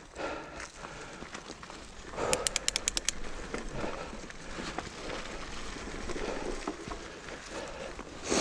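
Enduro mountain bike rolling along a leaf-covered dirt trail, tyres rustling and crackling over dry leaves. About two seconds in there is a short run of rapid sharp clicks, the loudest sound here.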